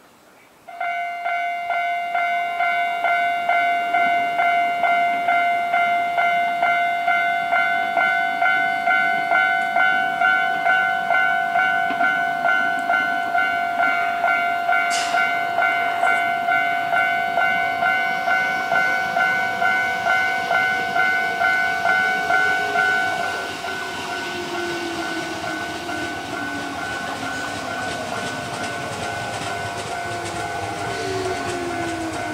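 Electronic level-crossing warning bell clanging about twice a second, dropping in level about 23 seconds in. Over the last few seconds the whine of an approaching electric train falls in pitch as it brakes into the station.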